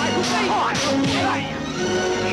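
Film fight sound effects: a few sharp swishes and hits, about a quarter second, three quarters of a second and one second in, over a loud music soundtrack.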